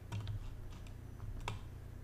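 A few faint clicks from operating a computer, the sharpest about one and a half seconds in, over a low steady hum.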